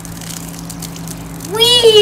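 Water from a garden hose spraying and splattering onto the lawn, an even hiss over a steady low hum. A boy starts speaking near the end.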